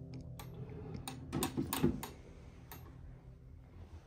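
Wooden bedside-table drawer being handled: its metal pull clicks and the drawer knocks as it is moved, a string of sharp clicks with a louder cluster about one and a half to two seconds in.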